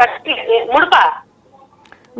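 A caller's voice over a telephone line, thin and cut off at the top as phone audio is, speaking briefly for about the first second, then stopping.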